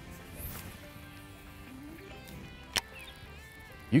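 Soft background music with held notes. A short swish of a baitcasting rod being cast comes about half a second in, and one sharp click a little before three seconds in.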